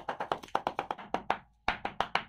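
A large knife chopping fast on a wooden chopping board, mincing chillies and raw chicken: an even run of sharp knocks, about seven a second, that breaks off briefly near the end and then starts again.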